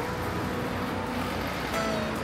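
Steady outdoor road-traffic noise, a continuous even rush, with background music faintly over it.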